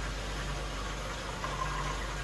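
Steady low mechanical hum with an even hiss over it, running unchanged throughout.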